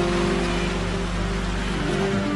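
Background music from the drama's score: slow held notes over a steady soft hiss.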